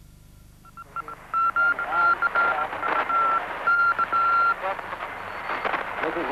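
Voices calling out over a steady high tone that cuts in and out several times, with a few sharp cracks; the sound starts about a second in.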